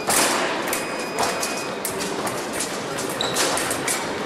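Women's foil bout: blades clicking together and fencers' feet stamping on the piste, echoing in a large hall, with a loud burst right at the start and a few brief thin high tones.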